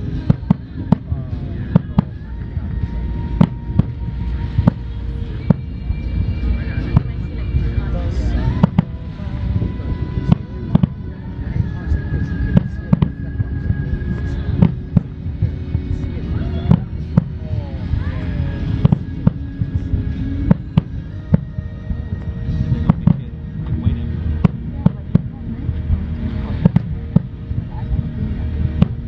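Nagaoka aerial firework shells bursting over the water: an irregular, continuous string of sharp booms and cracks over a low rumble, with voices in the crowd.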